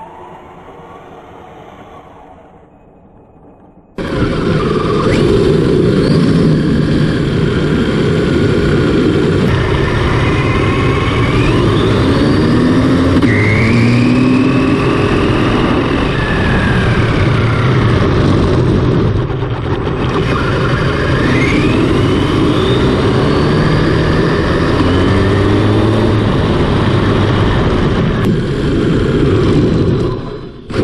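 Brushless electric motor and three-speed gearbox of a 1/8-scale RC car driving, its whine rising and falling in pitch as the car speeds up and slows. It is faint for the first few seconds, then loud from about four seconds in, with heavy road and wind noise from a camera mounted on the car.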